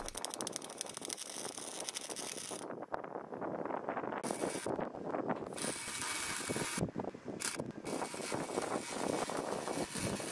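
MIG welding arc crackling as it joins stainless steel to mild steel with 309 wire under straight argon. It is a dense, fast crackle whose tone changes abruptly several times, going duller for a second or so at a time.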